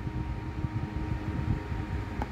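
Steady low rumbling background noise with a faint steady hum.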